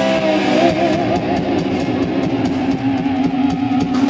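Live rock band playing loud: an electric guitar through Marshall stack amplifiers holds wavering, bent lead notes over a drum kit, with cymbal strokes about four times a second.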